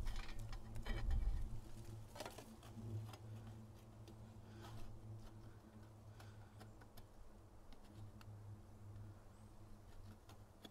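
Light clicks and knocks of sheet-metal stove parts being handled and fitted together, busiest in the first few seconds and sparse after, over a faint steady low hum.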